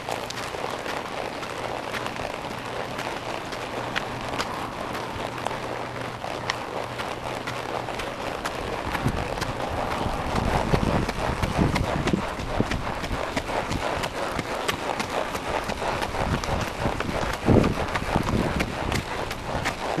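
A quarter horse's hooves clip-clopping at a walk on hard dirt and gravel, as irregular sharp hoof strikes. A steady low hum runs under them and stops about halfway.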